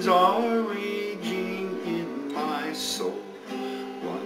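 A cutaway steel-string acoustic guitar strummed in chords, with a man singing a slow line of a song over it.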